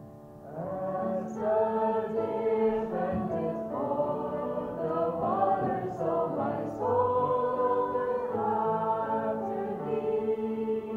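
A small group of women singing a worship song together over piano accompaniment; the voices come in about half a second in and carry on as held, slow-moving sung lines.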